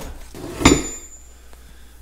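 A steel wrench from a vintage Caterpillar tool kit clinks once against the bench and the other tools as it is handled: a single sharp knock with a short high metallic ring after it.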